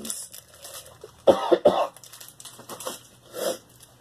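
A person coughing: two sharp coughs close together a little over a second in, and a softer one about three and a half seconds in.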